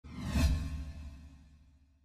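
A whoosh sound effect with a deep rumble under it, swelling to a peak about half a second in and then fading away over the next second.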